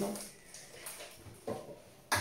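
Soft handling noises of plastic cleaning-product bottles being put down and picked up, with a brief knock about one and a half seconds in. The end of a spoken word trails off at the start.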